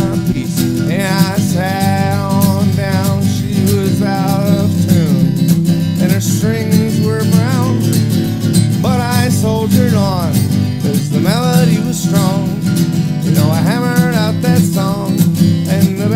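Acoustic guitar strummed steadily in a country-folk rhythm, with a harmonica playing a bending melody line over it in short phrases.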